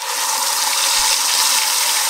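Ground onion paste poured into hot oil in a pot, sizzling loudly and steadily.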